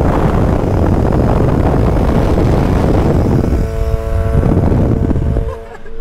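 Loud wind and road noise from a car travelling on a motorway, with a Yamaha R6 sport motorcycle riding alongside. A steady engine tone comes through briefly a little past the middle, and the rush drops away suddenly near the end.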